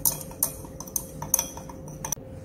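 A stirring rod clinking against the inside of a glass beaker while a glucose and yeast extract mixture is stirred to dissolve the solids. About half a dozen light, irregular clinks, a few of them close together a little past a second in.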